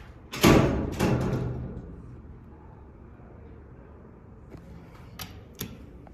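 Two heavy thumps about half a second apart near the start, each ringing briefly, then a few light clicks near the end.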